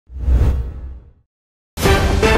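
A whoosh sound effect with a deep low rumble under it, swelling quickly and fading out by about a second in; after a brief silence, music starts near the end.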